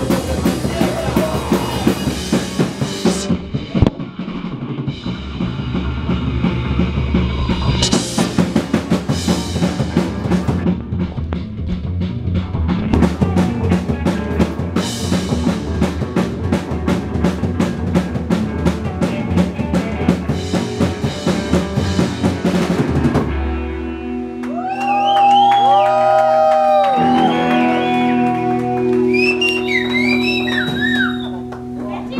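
Psychobilly band playing live, with guitar, double bass and fast, driving drums. The drumming stops about three quarters of the way in, leaving held, ringing notes whose pitches bend up and down.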